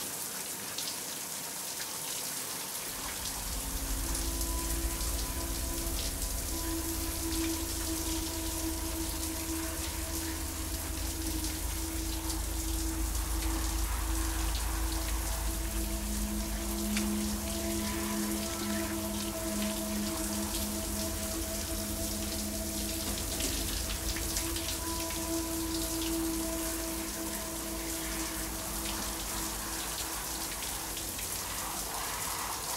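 Shower water spraying steadily onto the curtain and tub. About three seconds in, a low droning music of long held notes comes in underneath and carries on.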